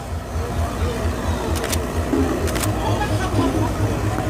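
A pause between songs: the music has stopped and a steady low engine rumble is left, with a few voices and a couple of brief clicks.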